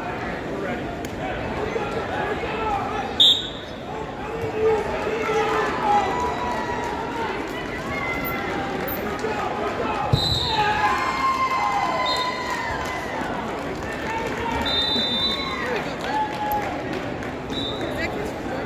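Spectators' chatter and shouting in a large gymnasium during a wrestling match, many voices at once, with a few sharp thuds: one about three seconds in, another about ten seconds in.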